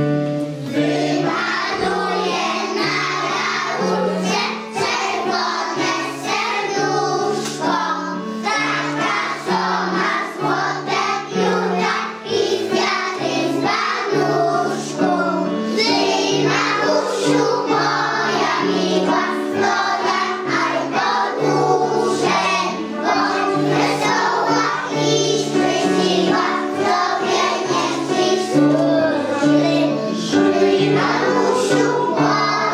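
A group of young children singing a song in unison to keyboard accompaniment, the voices coming in about a second in.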